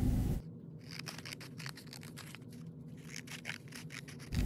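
Scissors snipping through a folded sheet of paper, a quick run of short, crisp cuts. A brief stretch of room hiss cuts off about half a second in.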